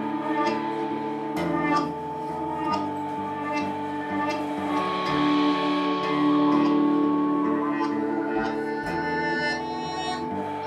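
Live band playing an instrumental passage: acoustic guitar, long held keyboard notes and drums, with a steady run of drum and cymbal strikes.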